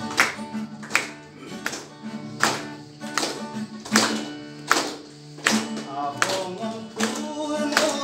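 Acoustic guitar strumming chords in an even rhythm, a sharp strum about every three-quarters of a second with the chord ringing on between strokes.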